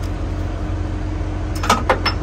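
Two sharp metallic clinks about a quarter second apart near the end: a sheared bolt stud pulled from a truck chassis bracket falling and striking metal. A steady low drone runs underneath.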